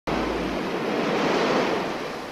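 A steady rushing noise, easing off slightly toward the end, with a low hum underneath that stops about half a second in.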